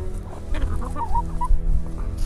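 Domestic hens clucking a few short times in the middle, over a steady low background.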